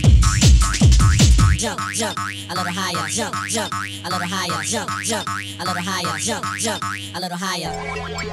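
Early-1990s techno track. A heavy kick-drum beat drops out about a second and a half in, leaving rapid, repeated downward-sweeping synth zaps, about four a second, over a held bass note. The track breaks briefly near the end and a new section with steady sustained tones begins.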